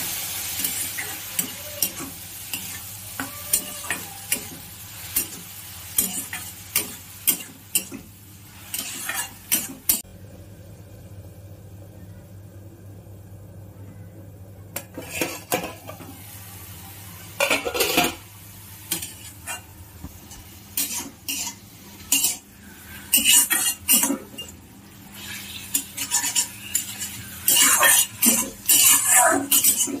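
Metal spatula scraping and clanking against a kadai as leafy greens are stir-fried, with the oil sizzling. A few seconds in the middle go quieter, and the scrapes come fast and repeated near the end.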